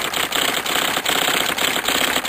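Rapid, continuous mechanical clatter of typewriter keystrokes, many strikes a second, running on without a break.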